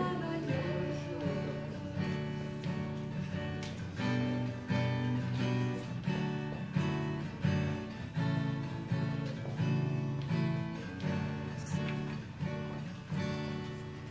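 Acoustic guitar strummed, chords struck in a steady, even rhythm.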